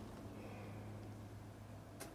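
Quiet background with a faint steady low hum and no distinct sound event.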